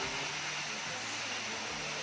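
Steady rushing of a waterfall pouring onto rocks, an even hiss with no breaks.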